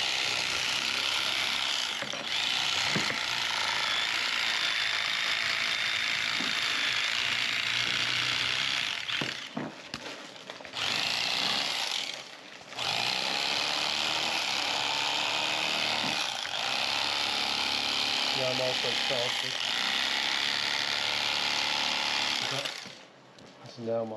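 An electric fillet knife running steadily while filleting a crappie, its motor cutting out briefly twice around the middle and stopping near the end.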